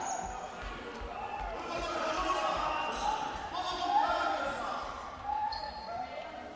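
Handball bouncing repeatedly on a sports-hall floor, about two to three bounces a second, fading out about halfway through.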